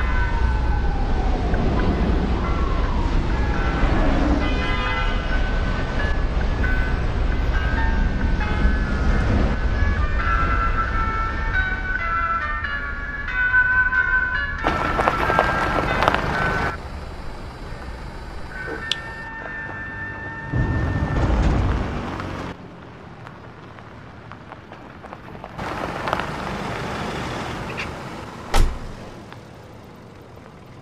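Background music mixed with traffic sound effects: vehicles passing in several swells of noise, louder in the first half. A single sharp click near the end.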